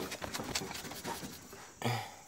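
Faint metallic handling noise as a Suzuki Carry Futura transmission is rocked by hand; the transmission is still stuck fast to the engine. A short grunt near the end.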